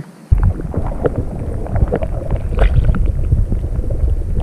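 Muffled underwater water noise picked up by an action camera dunked below the surface: a dense, rumbling slosh full of small knocks and crackles, starting suddenly a fraction of a second in.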